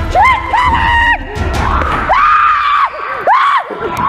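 High voices squealing in arching rise-and-fall glides, one held for most of a second, over music that drops out about a second in.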